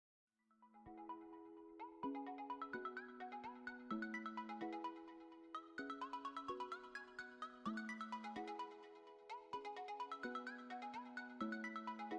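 Quiet intro music: a repeating melody of short pitched notes over held lower notes, at a steady pace.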